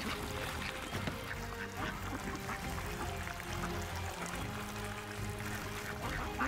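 Soft background music with a flock of domestic ducks quacking now and then as they crowd together to feed.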